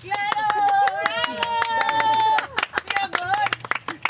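Several women clap their hands in a quick, steady patter. For the first two seconds or so their voices hold a long, high note together over the clapping, then the clapping carries on with only a short vocal sound.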